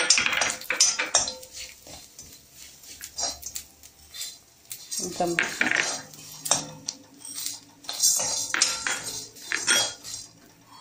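Metal spoon scraping and clinking against a cooking pan in irregular strokes, as rice uppuma is stirred in the pan.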